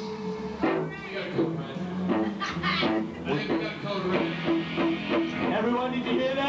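Electric guitar played live, a run of single picked notes changing pitch every fraction of a second, with voices underneath.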